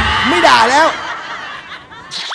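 A person's short vocal sound with a pitch that wavers up and down, like a snicker, lasting about the first second and then fading away.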